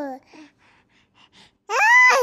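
A baby's voice: a long drawn-out vocal sound trails off at the start, followed by soft breaths and little gasps. Near the end another loud, long vocal sound rises and then falls in pitch.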